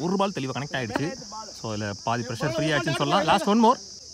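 A man's voice talking rapidly over a steady high-pitched drone of insects; the voice stops shortly before the end, leaving the insect drone.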